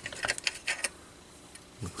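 A handful of light metallic clicks and rattles within the first second as a vintage tube radio's tuning mechanism is worked out of its sheet-metal chassis by hand.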